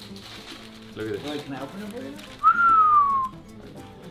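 A person whistling one short note that rises briefly and then slides down in pitch, about two and a half seconds in, just after some low murmured talk.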